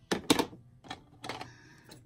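Clacking and rustling as a pair of scissors and a strip of paper are picked up and handled. There are four short bursts in under two seconds, the first two the loudest.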